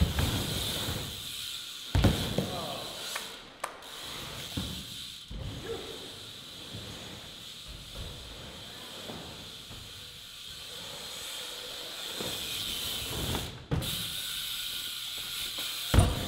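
Loud buzz of a BMX's Profile cassette hub freewheeling as the bike coasts, with tyres rolling on concrete. A few sharp thumps from the bike, the loudest about two seconds in and near the end.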